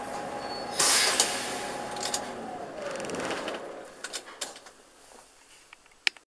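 Interior running noise of a Karosa B731 city bus, with a loud burst of compressed-air hiss about a second in. Then a whine falls in pitch as the bus slows, and the noise dies away, with a few clicks near the end.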